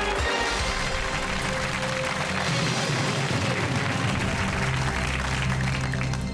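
Game-show music cue playing over audience applause.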